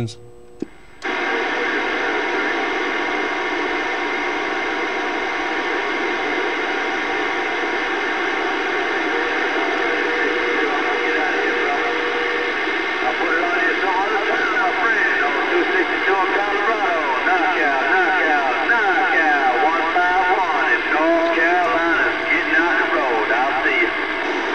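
CB radio receiver audio coming up about a second in: dense static with several steady heterodyne whistles, the sound of a long-distance skip signal. A distant station's voice, garbled and warbling, rises out of the noise from about halfway on.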